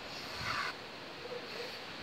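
Aerosol can of shaving foam hissing as foam is sprayed out, lasting under a second and cutting off sharply.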